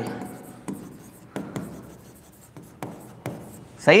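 Handwriting with a pen on an interactive touchscreen board: a scattering of light taps and faint scrapes as the words are written.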